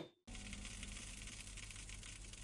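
Faint steady hiss with a low hum underneath: a noise floor with no distinct sound in it.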